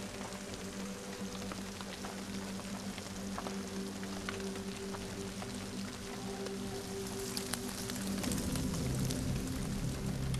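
Soft documentary score holding sustained notes over the steady hiss and patter of rain falling through rainforest foliage, produced by the habitat's artificial rain system. About eight seconds in, the music shifts to deeper notes and grows a little louder.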